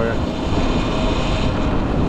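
Wind and road noise on a Cake Kalk& electric motorcycle riding in traffic and slowing. It is a steady loud rush with a faint high whine over it.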